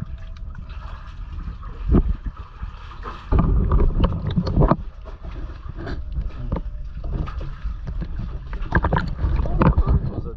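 Water sloshing and splashing around a person moving through shallow water, over a steady low rumble of wind and handling noise on the camera's microphone. The sloshing swells about two seconds in, again for about a second and a half in the middle, and once more near the end.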